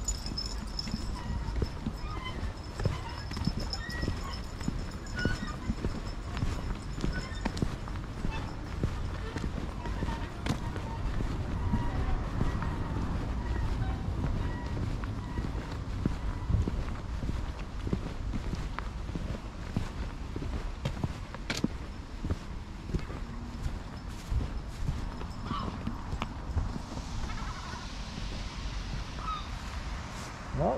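Footsteps and small clicks of walking on a tarmac path, with a steady low rumble.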